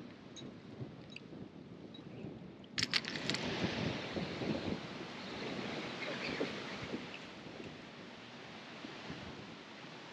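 Wind buffeting the microphone over a choppy canal, a steady rushing noise. It jumps louder with a few sharp clicks about three seconds in and eases off over the last few seconds.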